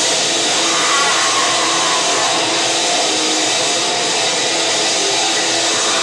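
Grindcore band playing live: a dense, steady wall of distorted guitar and drums.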